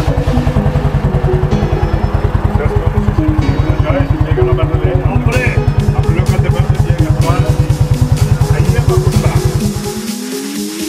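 Vintage motorcycle engine idling, with an even beat of about twelve firing pulses a second that cuts off abruptly at the end, under music and voices.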